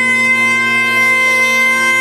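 Great Highland bagpipes holding one steady note over their drones, unchanging in pitch, with no percussion.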